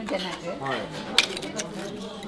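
Oyster shells and oyster knives clinking against a metal tray, with one sharp clack a little over a second in.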